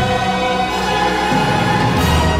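Opening theme music: a choir singing sustained notes over an orchestra.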